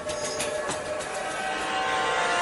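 Dramatic background score of sustained synthesized chords that swell louder, with a short sharp hit about half a second in.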